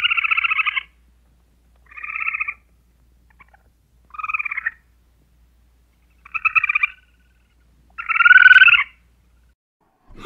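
A squirrel giving a series of short, rapid trilled chatter calls, each under a second long and about two seconds apart; the last is the loudest.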